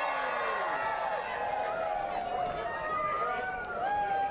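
Crowd chatter: several voices talking and calling out over one another.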